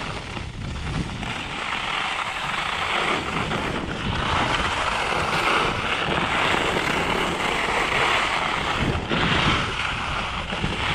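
Alpine skis running and carving on groomed piste snow, a steady scraping hiss that swells from about two seconds in, with wind rumbling on the microphone.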